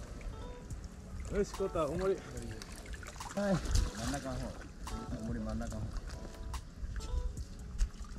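Shallow pond water sloshing and trickling as people wade and handle a seine net, under bursts of talk and laughter.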